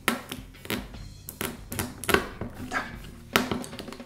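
Irregular clicks and taps from hands working zip ties and an LED strip around 3D-printed plastic parts, over quiet background music.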